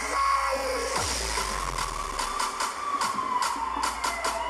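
Electronic dance music over a festival sound system, recorded from the crowd, in a breakdown with the bass cut out: a held synth line over evenly spaced drum hits, about four a second.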